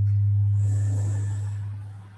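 A low steady hum that fades away near the end.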